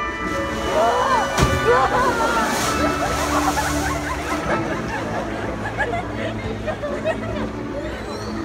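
An orca's splash: a sharp hit of water about a second and a half in, then the wave it throws sloshing and rushing against the pool's glass wall for a couple of seconds. Crowd voices exclaim and chatter throughout, and show music trails off at the start.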